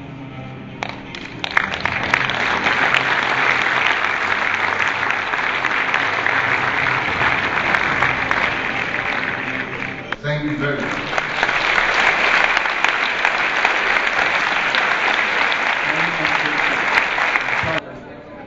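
Audience applauding over background music. The clapping swells in about a second in and cuts off suddenly near the end.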